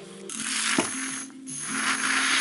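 Handheld battery milk frother whisking hot cacao in a metal mug: a steady small-motor whir with a frothy hiss. It starts a moment in, cuts out briefly about halfway and starts again.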